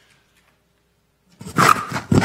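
Near silence for over a second, then a loud voice close to a microphone starts near the end.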